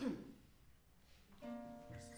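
A harp string plucked about a second and a half in, its note ringing on.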